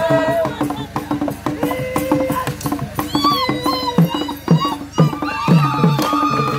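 Acholi Bwola dance music: drums beaten in a fast, steady rhythm, with voices chanting and singing long, gliding notes over them.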